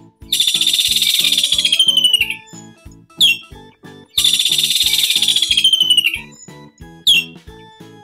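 Kingfisher calls: two long, high-pitched trills of about two seconds each, each followed by a short falling note, over light background music with a steady beat.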